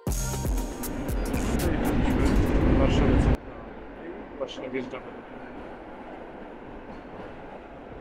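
Passenger train running through a tunnel, heard through an open carriage window: a loud rushing rumble that swells over about three seconds, cuts off suddenly, then goes on as a quieter steady rumble. Described as quite loud.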